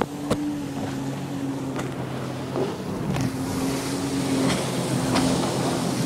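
Sea-Doo RXT personal watercraft engine running with a steady hum whose pitch shifts up and down in steps, over wind and water hiss. It is muffled by the plastic bag around the phone, with a few scattered clicks.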